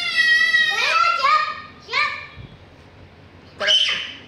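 A young child shouting in high-pitched squeals: one long held call that breaks off about a second in, a few short squeals, a pause, then another short cry near the end.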